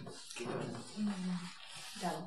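Soft, breathy human laughter with a short voiced sound about a second in.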